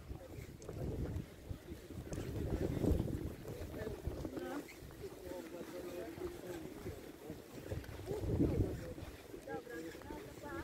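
Wind buffeting the microphone in low rumbling gusts, strongest around two to three seconds in and again near the end, with people's voices talking in the background.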